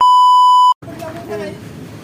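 Colour-bars test-tone beep, a steady high tone that lasts under a second and cuts off suddenly, followed by quieter background noise with faint voices.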